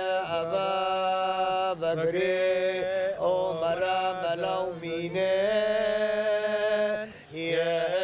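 Male Yazidi qewal singers chanting a sacred hymn (beyt) in long, held, slightly wavering notes, sung in several long phrases with brief breaks between them.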